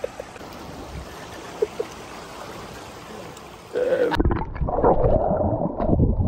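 A few seconds of steady open-air hiss by the sea. About four seconds in, a cut to a submerged camera's muffled underwater sound: churning water and bubbles, loud and dull, with the high end gone.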